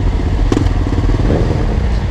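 Suzuki GSX-R600's inline-four engine idling steadily, a low even rumble, with other motorcycles idling close by in stopped traffic.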